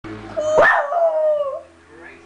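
A small terrier-type dog howling: one howl that opens with a sharp rising note about half a second in, then holds a slowly falling tone for about a second. It is a distress howl at the absence of her companion dog.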